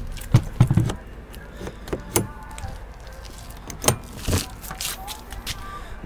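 Keys jangling and a handful of sharp metal clicks and knocks from an RV's exterior storage compartment door being unlocked and opened.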